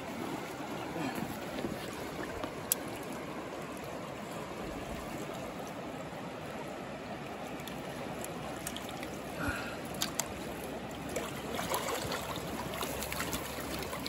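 Shallow river running steadily, an even rush of water, with a few brief sharp clicks, one about three seconds in and another about ten seconds in.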